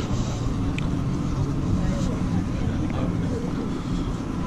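Outdoor crowd ambience: a steady low rumble with faint, distant voices of passers-by.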